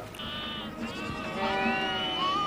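Penned sheep and goats bleating: a short high bleat, then a longer drawn-out one starting past halfway.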